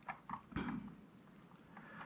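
A handful of faint keystrokes on a mechanical keyboard with Cherry MX Brown switches, all within the first second.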